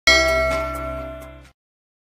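A single loud metallic clang struck once, ringing with several steady tones that fade, then cut off abruptly about a second and a half in.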